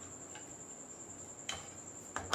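Faint stirring of a metal spoon through candy lozenges melting in water in a steel pan, with one sharp clink of the spoon on the pan about one and a half seconds in. A steady high-pitched whine sounds throughout.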